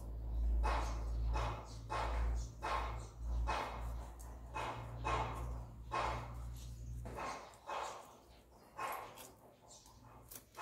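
A dog barking over and over, about two barks a second, with a low steady hum underneath that stops about seven seconds in.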